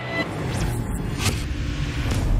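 Logo-reveal sound effect: a deep rumble building in loudness, with swishes about half a second and just over a second in.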